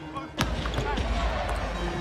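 Basketball being dribbled on a hardwood arena court over the steady rumble of the arena crowd. A sharp click comes about half a second in, after which the arena noise is louder.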